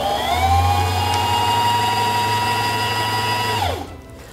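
Singer Simple 3232 sewing machine's motor driving the bobbin winder at speed, a steady whine with a low hum. The whine rises as it speeds up at the start, then falls away and stops near the end.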